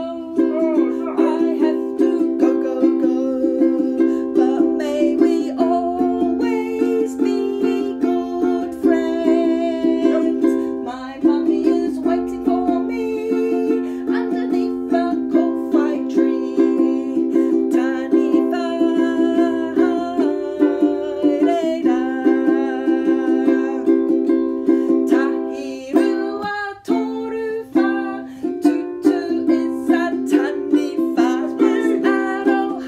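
Ukulele strummed in a steady rhythm, with a woman singing a children's song over it.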